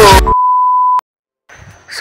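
Music cuts off, followed by a single steady electronic beep tone of about two-thirds of a second that ends in a click, then a brief silence: an edit-inserted bleep between clips.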